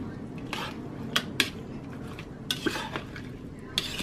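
A metal slotted spatula scraping and clicking against a bowl as grated carrot is stirred into a wet fruit mixture, with a handful of separate sharp clicks.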